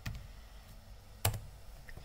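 A few computer keyboard key clicks, the loudest a single sharp one a little over a second in.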